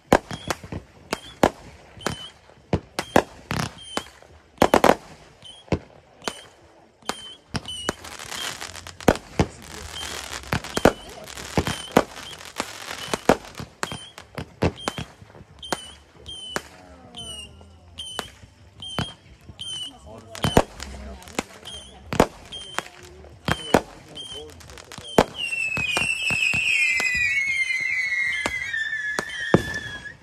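Aerial fireworks going off repeatedly: many sharp bangs and pops at irregular intervals, with a stretch of dense crackling in the middle. Over the last few seconds a long whistle falls in pitch.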